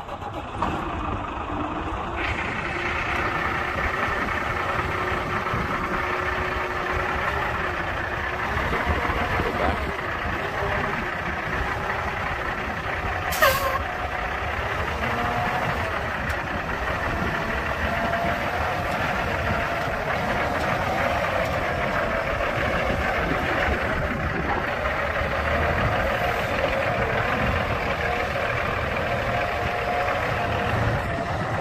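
The Cummins diesel engine of a 2006 International 9400i truck idling steadily just after start-up, with a brief sharp sound about 13 seconds in.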